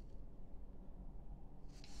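Quiet room tone with a faint, steady low hum and no distinct event.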